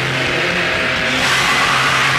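Live rock band playing loudly, a dense distorted wash over one low note held steady.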